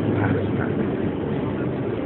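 City traffic noise: a steady low engine hum with a wash of road noise.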